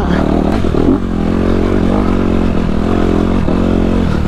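Dirt bike engine running under load along a rocky trail, its revs rising and falling a little as the rider works the throttle.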